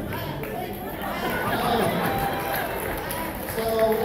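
Chatter of many voices talking at once, with no single speaker standing out.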